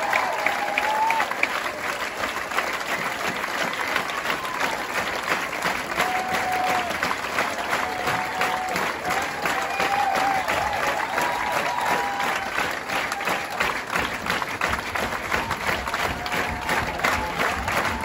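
Concert audience applauding at the end of a song, with dense clapping and a few drawn-out calls from the crowd above it.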